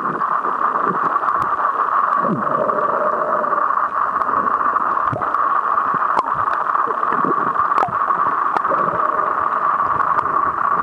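Underwater sound heard through a submerged camera: a steady muffled hiss, with scattered sharp clicks and a few short bubbling gurgles.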